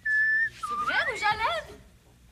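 Whistling: a held steady note, then a run of quick notes sliding up and down that fade away near the end.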